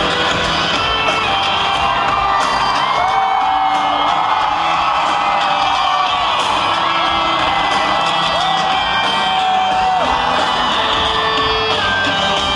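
Live rock band playing through an arena PA, recorded from within the audience, with long held notes that slide up and down over guitars and drums. The crowd cheers along.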